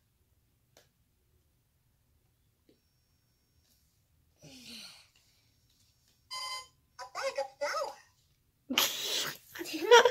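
Toy Minnie Mouse cash register's hand scanner reading a price tag: after a few quiet seconds it gives a short electronic beep and then a brief recorded voice, followed near the end by laughter.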